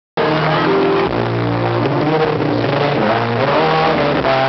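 Live pop-rock band playing, heard from the crowd: sustained bass notes under guitar chords and drums. The sound cuts in abruptly just after the start.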